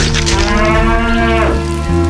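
Bison bellowing: one long, low moo that bends down in pitch and ends about one and a half seconds in.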